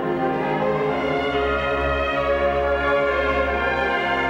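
A solo clarinet with a symphony orchestra, playing a romance for clarinet and orchestra in long sustained notes.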